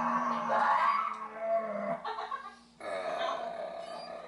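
A person making a drawn-out, growling, animal-like vocal noise, breaking off briefly a little under three seconds in and then starting again.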